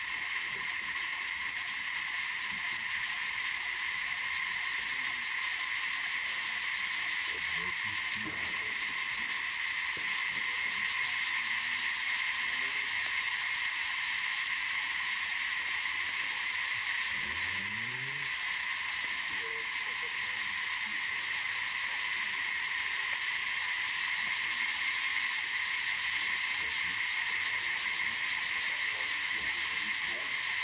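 Steady chorus of insects: an unbroken high buzz, with a faint low sound that rises briefly about seventeen seconds in.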